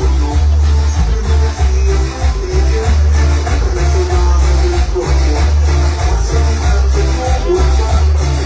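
Latin dance music played loud through a sonidero sound system, with a heavy, pulsing bass line under a melody.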